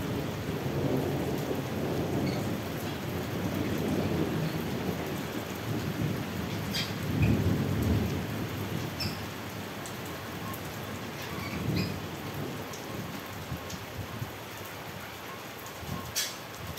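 Thunder rumbling over steady rain. The rumble is loudest about seven seconds in, swells again briefly near twelve seconds, then fades.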